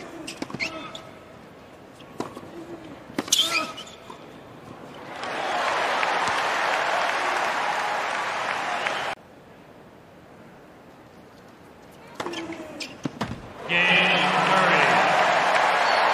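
Tennis ball struck by rackets in a rally, a handful of sharp hits, followed by a stadium crowd applauding and cheering that cuts off abruptly after about four seconds. A few more ball hits come about twelve seconds in, then loud crowd applause and cheering again near the end.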